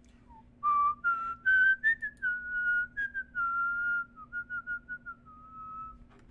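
A person whistling a short, wandering tune through the lips: a string of held notes stepping up and down in pitch, louder for the first few seconds, then softer.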